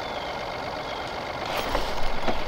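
Steady low hum with a faint high whine, typical of an electric trolling motor pushing a small boat slowly, with a little more movement noise near the end as a fish is hooked.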